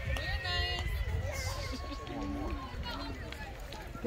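Indistinct voices: several people talking at a distance, over a steady low rumble.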